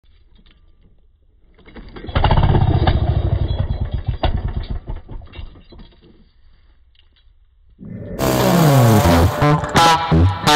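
Husqvarna 55 two-stroke chainsaw being pull-started. The engine turns over in a quick run of pulses about two seconds in, then fades out and dies within a few seconds as the recoil starter fails. Music comes in about eight seconds in.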